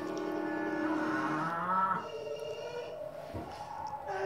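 A child's voice making a long, held, wordless vocal sound that rises slightly near its end. About two seconds in it gives way to a shorter, higher-pitched sound, as the child voices the plush toy birds.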